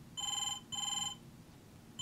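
Telephone ringing a double ring: two short rings in quick succession, each a steady electronic tone.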